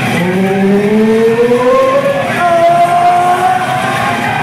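Loud, drawn-out yelling voices: a long call rising steadily in pitch for about two seconds, then a higher note held level for over a second, over general club noise.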